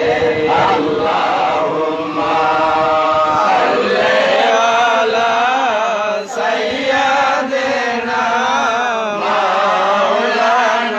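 A group of men chanting an Islamic devotional recitation together in one continuous melodic line that wavers in pitch.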